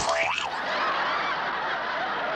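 A sharp splat as a paper plate of whipped cream is slapped into a face, followed at once by a brief wobbling pitched comic sound effect, then a steady hiss.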